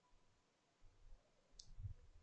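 Near silence, with a single faint computer mouse click about one and a half seconds in.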